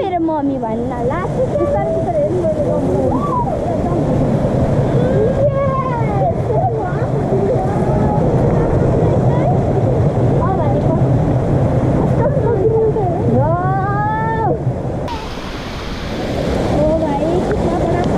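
A steady rushing noise like running water, with children's high voices calling out and squealing over it. The noise changes and drops about fifteen seconds in, then builds again near the end.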